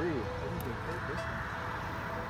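Faint, low murmured voices over a steady background hum.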